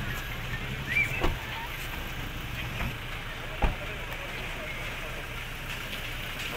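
A parked car's engine idling with a steady low hum, with two knocks about a second in and a single sharp thump a little past halfway through.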